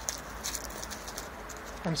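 Faint crinkling of aluminium foil as it is scrunched and pushed into a small plastic bottle, a few soft irregular crackles.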